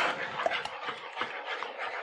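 Beaten eggs being stirred in a hot nonstick frying pan: quick repeated scrapes of the utensil through the setting egg over a light sizzle.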